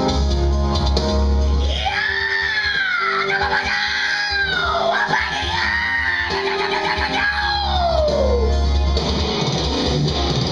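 A man screaming metal vocals into a handheld microphone over a loud instrumental backing track. The scream comes in about two seconds in, bends up and down in pitch, and trails off with a falling slide shortly before the end, while the music runs on.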